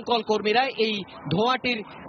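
Only speech: a news reporter talking without pause in Bengali.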